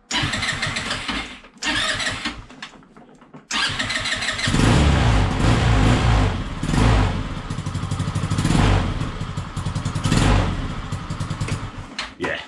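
Peugeot Django 125 scooter's single-cylinder four-stroke engine restarted on its electric starter: two short bursts of cranking, then a third that catches about four seconds in. It then runs on the freshly fitted carburettor, swelling and easing several times, and is called spot on, with the idle perhaps wanting a slight adjustment.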